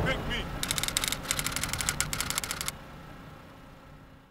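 A rapid, irregular run of sharp clicks lasting about two seconds, then a low background that fades out.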